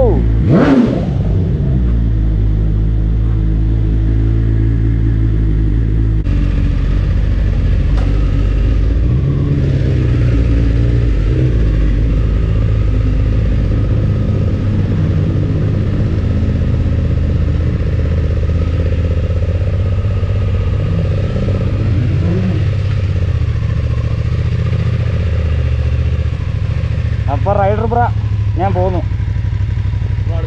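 Motorcycle engine running at idle, a steady low engine note throughout, with a sharp thump just under a second in.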